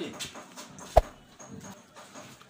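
A single sharp knock about a second in, over faint handling sounds on the workbench.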